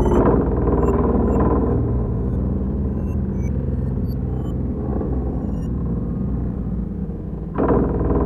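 Dark electronic industrial music: a dense, rumbling synthesizer drone with a heavy bass layer and scattered short high electronic blips. The drone eases a little midway and surges back with a new loud entry near the end.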